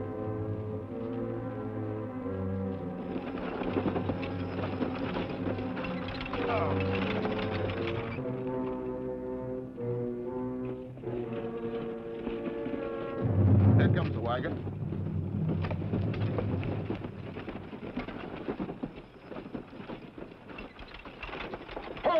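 Dramatic orchestral western score, held brass and string chords shifting from one to the next, with a loud low swell about two-thirds of the way through. Under it run the rough, drumming hoofbeats of galloping horses.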